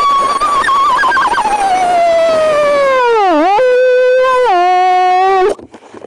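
A long, loud cartoon crying wail. It holds high with a wobble, then slides steadily down, dips and comes back up, drops a step lower, and cuts off suddenly near the end.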